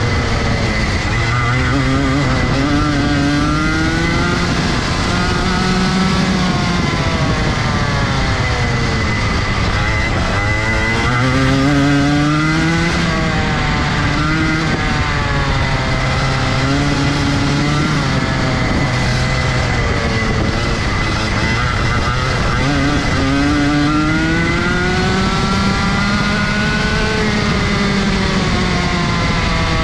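Rotax Junior Max 125cc two-stroke single-cylinder kart engine, heard onboard, revving up out of corners and dropping back on braking, its pitch climbing and falling several times as it laps. A constant high whine runs underneath throughout.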